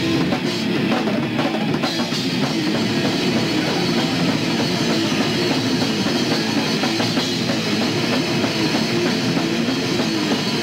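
Death metal band playing live and loud, with no vocals: a drum kit hit in a dense, fast run of strokes with bass drum under heavy-metal guitar.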